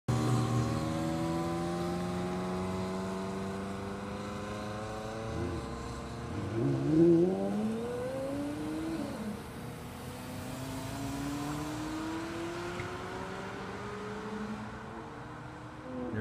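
Two sports-car engines, a Ferrari 360's V8 and a Porsche Carrera GT's V10, pulling away. They are loudest about seven seconds in, where the pitch climbs under acceleration and drops sharply at a gear change. The pitch then rises again while the sound fades as the cars draw away.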